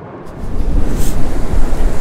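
Wind buffeting the microphone: a loud low rumble that comes in suddenly about half a second in, over a steady wash of the sea.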